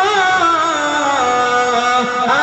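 Male voice singing a long held, ornamented note of a devotional Urdu ghazal over instrumental music; the melody slides down in pitch about a second in.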